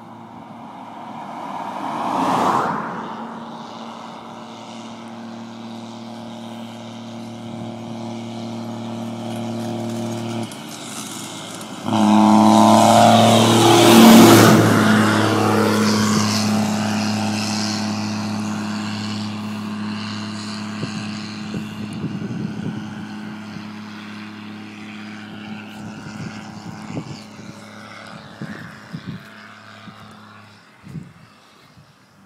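Case IH Puma 180 tractor's six-cylinder diesel with a straight-pipe exhaust coming straight off the turbo, running with a steady note. It gets suddenly much louder about twelve seconds in, passes close with its pitch dropping, then fades slowly as it drives away. A car passes quickly near the start.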